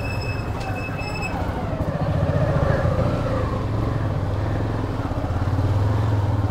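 Motorcycle engine running at low road speed with a steady low hum, which grows a little louder about two seconds in. A thin high tone sounds briefly in the first second.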